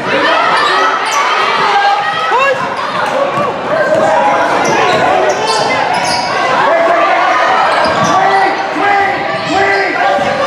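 Live basketball game in a large gym: a basketball being dribbled and bouncing on the court, mixed with continuous overlapping shouts and chatter from players and spectators, all echoing in the hall.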